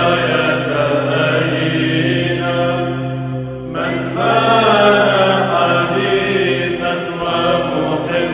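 Byzantine Orthodox liturgical chant: voices singing a melody over a steady, low held drone note. The sound changes abruptly a little before halfway, then the chant carries on louder.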